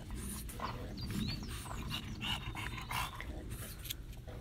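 French bulldogs panting close by, with a few short breathy bursts.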